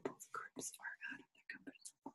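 A woman whispering: a quick run of quiet, hissy syllables.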